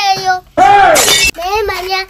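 A child's high-pitched voice singing or chanting. About half a second in, a loud harsh crash-like burst of noise lasting under a second breaks in, then the voice carries on.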